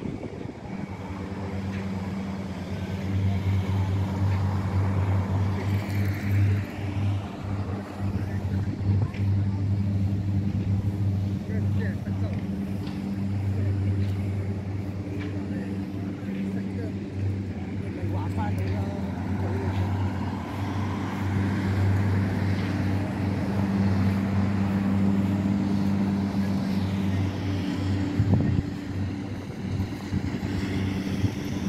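A steady low engine hum, like a vehicle running nearby, with street noise and voices around it.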